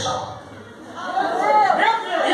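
Speech only: a voice heard through the church's amplification in a large hall, coming in about a second in after a brief lull.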